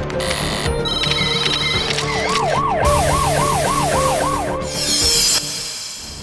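News-programme intro theme music with a siren sound effect wailing up and down about three times a second in the middle, and a hissing whoosh that cuts off suddenly near the end.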